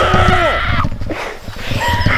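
A young man's wordless, anguished cries: one strained cry of about a second that rises and then falls in pitch, and another starting near the end, with low thuds of movement beneath.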